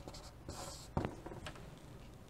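Chalk writing on a chalkboard: faint scratching strokes with a few light taps of the chalk against the board.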